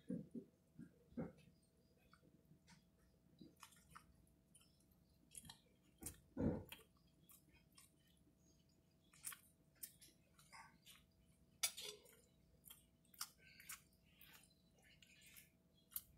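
Faint close-up chewing and wet mouth clicks of a person eating a bun-wrapped sausage, scattered soft smacks throughout, with one stronger low thump about six and a half seconds in.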